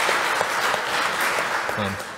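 Congregation applauding: a dense, even patter of many hands clapping that thins out and fades near the end.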